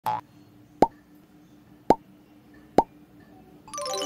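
Three short cartoon-style pop sound effects about a second apart, each a quick rising bloop, after a brief sound right at the start; a bright chiming music jingle comes in near the end.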